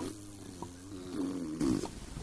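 A person making a low, drawn-out buzzing vocal noise that wavers in pitch for almost two seconds, opening with a sharp click.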